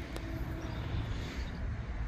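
Steady low rumble of wind buffeting the microphone outdoors.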